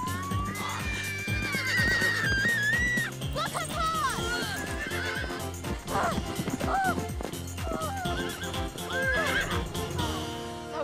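Horses whinnying several times, long wavering calls that fall in pitch, over background music with a steady beat.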